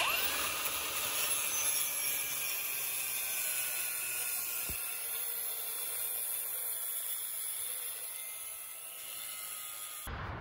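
Cordless angle grinder spinning up and cutting a V-notch into square steel tubing. It runs as a steady high whine whose pitch slowly falls as it cuts.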